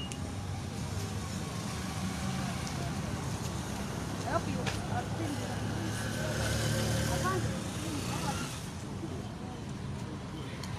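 A motor vehicle's engine running with a steady low hum, with indistinct voices in the background.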